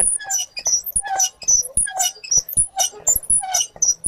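Hand-turned corn grinding mill being worked, giving a quick, uneven run of short squeaks and knocks, several a second.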